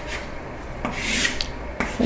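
Chalk writing on a chalkboard: a few short taps and scratches, then a longer rasping stroke about a second in as a line is drawn down the board.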